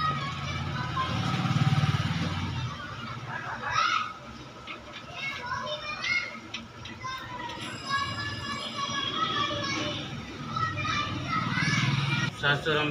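Background chatter of several voices, children among them, talking and playing.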